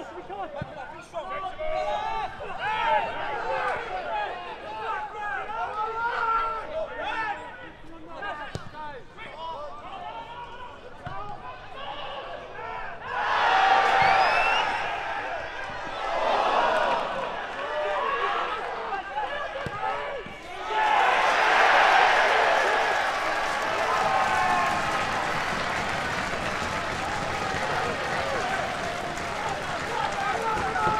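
A small football crowd and players shouting during open play, with the odd thud of the ball being kicked. A sudden loud crowd roar goes up about 13 s in as a shot goes in on goal, and from about 21 s in the crowd cheers and applauds loudly and steadily as the home side's goal is celebrated.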